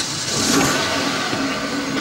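Steady vehicle noise with a faint low hum running under it.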